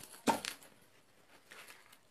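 A brief rustle of a quilted cotton fabric panel being handled and folded about a quarter of a second in, then near silence with only faint handling noise.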